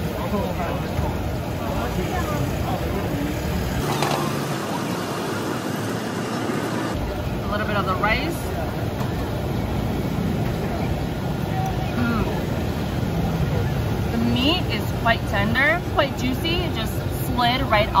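Busy street ambience: a steady rumble of traffic with scattered voices of passers-by talking in the background.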